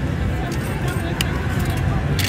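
Casino floor ambience: a steady low rumble with background voices and music, and a few sharp clicks about half a second and a second in.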